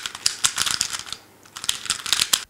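Rubik's cubes being turned or handled quickly: rapid, dense plastic clicking in two runs, with a short lull a little past the middle.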